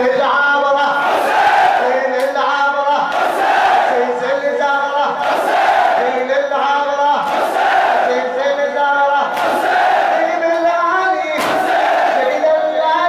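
Large crowd of men chanting a Shia mourning lament (latmiya) in unison, a sung phrase repeating over and over. A sharp collective stroke lands about every two seconds, from hands beating on chests in time with the chant.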